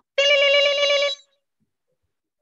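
Telephone ring tone sounding once: one steady pitched tone with a fast warble, lasting about a second and cutting off sharply.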